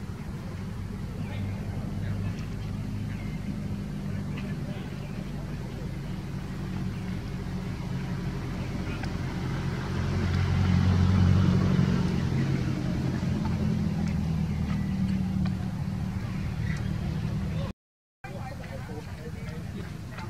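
A motor vehicle's engine running steadily, growing louder about halfway through and easing off again, cut by a moment of silence near the end.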